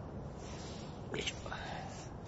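A man mutters a soft "yoisho", the Japanese grunt of effort, about a second in, over a steady low rumble of wind on a phone microphone.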